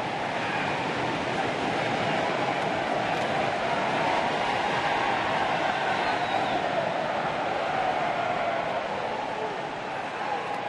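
Boxing arena crowd: a steady hubbub of many voices blending into a continuous din.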